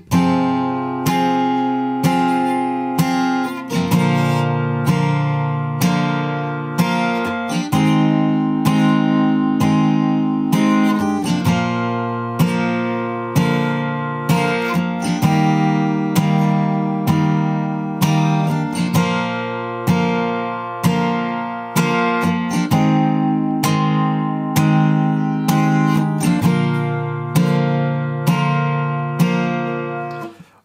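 Taylor steel-string acoustic guitar with a capo, strummed in steady even strokes of about one a second through a chord line of Dm, G, F, G, C, G, F and G shapes.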